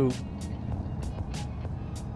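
A touring motorcycle running at low speed gives a steady low engine and road rumble through a helmet microphone, with music playing faintly underneath.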